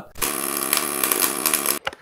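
Electric arc welding: a short weld with a steady crackling buzz that starts just after the beginning and cuts off abruptly near the end.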